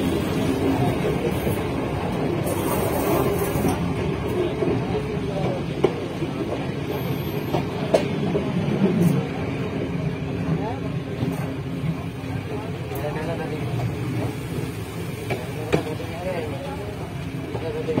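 Train running along the track: a steady rumble with a few sharp clacks, heard from inside the carriage, with people talking in the background.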